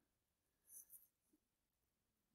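Near silence, with two faint, brief ticks just before a second in.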